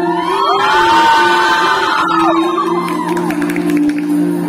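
Music playing in a large hall, with the audience cheering and whooping over it: several long overlapping whoops rise and fall between about half a second and two seconds in, then fade as the music carries on.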